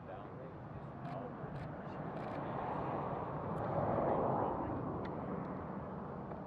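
A vehicle passing by, its tyre and engine noise swelling to a peak about four seconds in and then fading.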